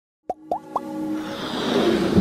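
Intro sting of electronic music: three quick pops about a quarter second apart, each bending upward in pitch, then held tones and a rising swell that builds steadily louder.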